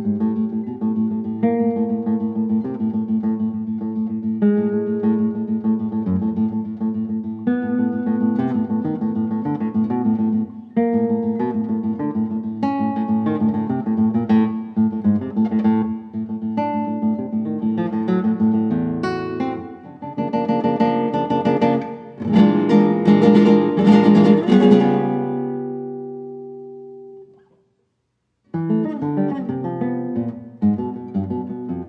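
Solo classical guitar, a Henner Hagenlocher instrument, playing a run of plucked notes and chords. About two-thirds of the way in it builds to a burst of loud, rapid chords, then a last chord rings and dies away. After about a second of silence, playing resumes near the end.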